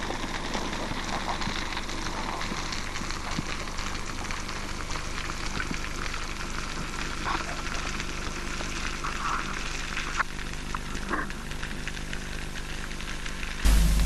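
Underwater ambience: a steady crackling hiss made of many fine clicks, with a faint steady low hum underneath.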